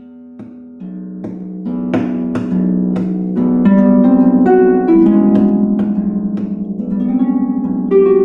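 Lyon & Healy Style 100 pedal harp played solo, the opening of a piece: notes start suddenly out of silence, then plucked notes pile up and ring over one another, growing louder over the first few seconds.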